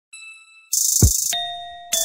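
Opening of a song's instrumental beat: a bell-like chime rings and fades, then a loud hissing cymbal-like burst and a deep kick drum that drops in pitch about a second in. After that comes a held chime tone, and the hiss comes in again near the end.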